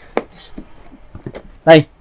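Unpacking an angle grinder's cardboard box: one sharp knock, a brief rustle of cardboard and packing, then a few small taps as a hard plastic part, the wheel guard, is lifted out.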